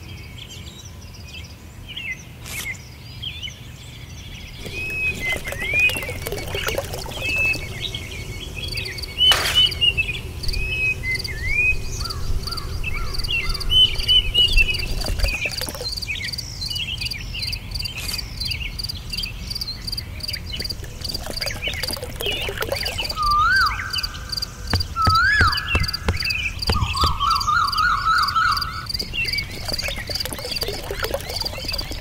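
Outdoor nature sounds: birds chirping, with a steady fast insect trill running high above them, and a run of rapid pulsed calls near the end. A single sharp knock comes about nine seconds in.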